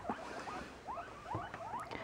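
Pet guinea pigs squeaking off in the room: a quick run of short, faint, rising squeaks, several a second.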